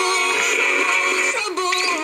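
A pop song with singing playing over FM radio from a portable boombox's small speaker, thin in the bass.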